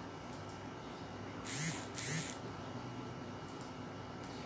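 Steady background hum and hiss of a room, with two short hissing bursts a little past the middle.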